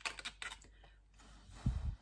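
Quick small plastic clicks as a toy bubble wand is worked in its bottle, then a breathy blow through the wand near the end, with a low thump as the breath hits the microphone.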